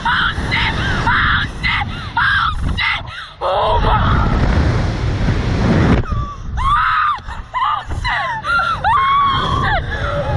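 Two riders screaming and shrieking as a Slingshot reverse-bungee capsule launches them into the air. About four seconds in, a rush of wind over the on-ride camera's microphone drowns the voices for about two seconds, then the high screams start up again.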